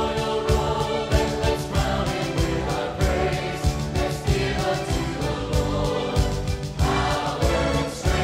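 Live praise-and-worship music: a choir singing over a band with a steady drum beat.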